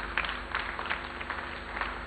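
Light, scattered applause from the audience as a bouquet is presented.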